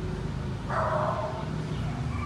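A dog barking once in a single drawn-out call of just under a second, about a third of the way in, over a steady low background hum.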